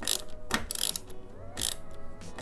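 Hand screwdriver driving an M6 screw into a metal monitor-arm bracket: three short rasping click bursts, one with each turn of the handle. The screw is stiff to drive by hand.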